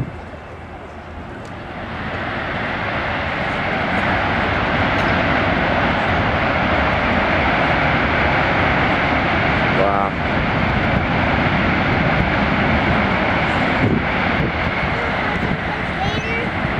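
Jet noise from a C-17 Globemaster III's four turbofan engines at high power while the aircraft is on the runway, building up over the first few seconds and then holding loud and steady.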